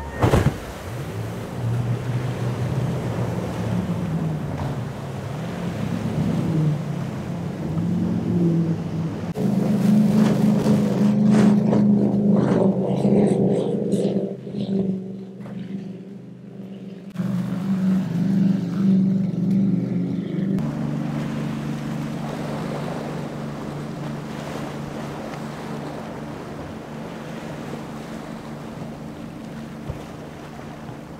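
High-performance powerboats running at speed on big outboard engines, one pass after another: a loud engine drone that rises and falls in pitch and changes abruptly a few times. The first is an MTI on quad Mercury 450R supercharged V8 outboards.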